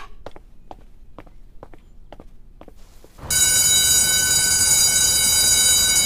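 Footsteps walking away, about two steps a second. About three seconds in, a loud, bright sustained sound made of many steady high tones sets in and holds.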